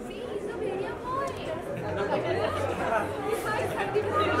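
Crowd chatter: many people talking over one another at once, growing busier about two seconds in.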